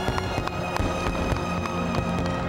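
A music score with sustained tones, with the bangs and crackle of fireworks going off under it.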